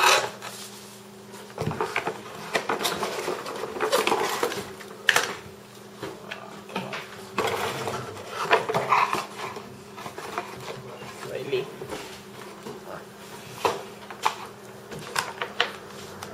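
Handling noise from cables and a phone being picked up and put down on a desk: irregular small clicks, knocks and rustles, some in quick clusters. A steady low hum runs underneath.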